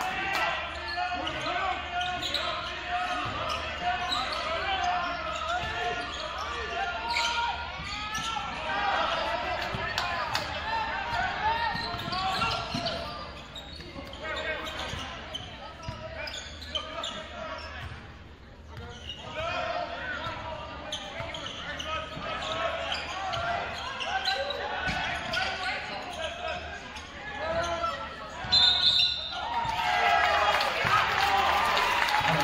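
Live basketball game sound in a large gym: the ball dribbling on the hardwood court under overlapping voices from the crowd and benches. A brief shrill high tone is heard near the end.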